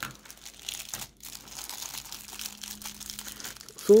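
Thin clear plastic bag crinkling irregularly as fingers work a Lego minifigure and its parts out of it, with a brief pause about a second in.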